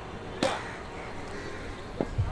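A cricket bat striking a ball once: a single sharp knock about half a second in, over faint outdoor background.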